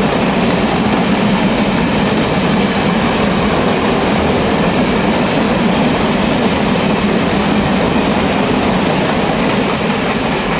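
A train of four-axle Uacs cement silo wagons rolling past close by, their wheels running over the track in a steady, loud rumble.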